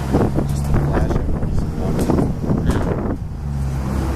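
A motor vehicle's engine humming steadily and low, with gusty wind buffeting the microphone. The gusts drop away about three seconds in while the low hum carries on.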